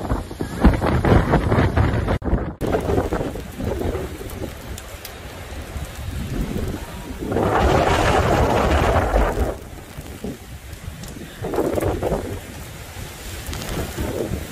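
Hurricane-force wind and driving rain buffeting a phone microphone in gusts, a deep unsteady roar. It swells into a long, louder gust about halfway through and another a few seconds later.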